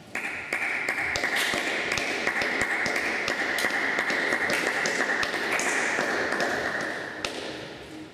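Audience applause: many hands clapping together. It starts suddenly, holds steady, then thins out and stops about a second before the end.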